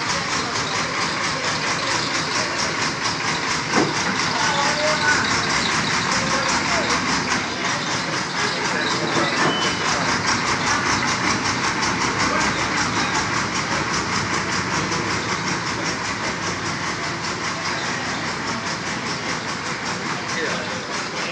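Backhoe loader's diesel engine running steadily as the machine moves through flood water, with people's voices around it.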